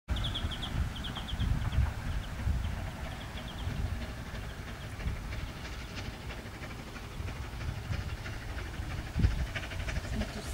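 Distant narrow-gauge steam locomotive approaching, heard as an uneven low rumble. A bird chirps quick runs of high notes during the first few seconds.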